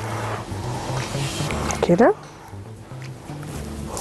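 A hand whisk beating a thin batter of flour, starch and water in a glass bowl for about two seconds, then stopping. Background music with a low bass line plays throughout.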